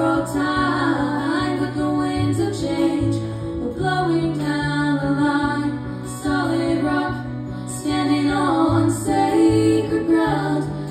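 Live acoustic folk song: two women's voices singing together over a strummed acoustic guitar, heard through a PA.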